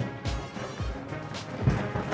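A military marching band playing, with a steady bass drum beat about twice a second.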